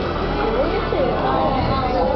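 A voice over music, with no distinct fireworks bangs standing out.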